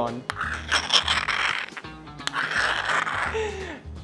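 A metal spoon clicking and scraping in a bowl of thick Greek yogurt, with two sharp clinks and two stretches of scraping, over background music with a steady low beat.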